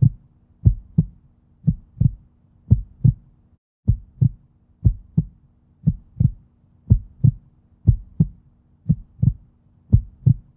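Heartbeat sound: paired low thumps, lub-dub, repeating about once a second in an even rhythm over a faint steady hum, broken off briefly once a few seconds in.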